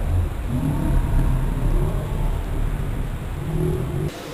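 Outdoor background noise: a steady low rumble with a motor vehicle's engine note rising and falling through it.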